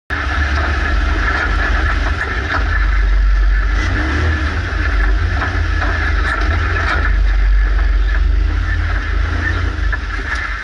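Off-road vehicle engine running hard at speed, with heavy wind buffeting and rumble on an action camera's microphone and a few short knocks from the rough track.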